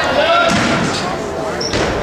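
Several voices chattering in a large gymnasium, with two sharp thuds, one about half a second in and another near the end.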